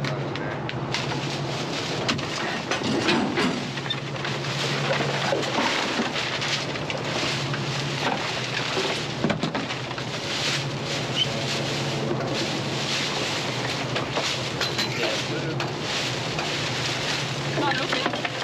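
A plastic trash bag rustling and crinkling again and again as it is handled and rummaged through, over a steady low hum.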